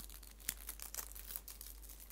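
Packaging of a newly bought tarot card deck being handled and unwrapped: a quiet, irregular string of small crinkles and crackles.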